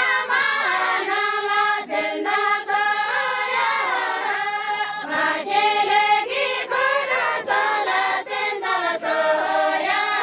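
A group of women singing a traditional wedding song together in unison, with long held notes that slide in pitch.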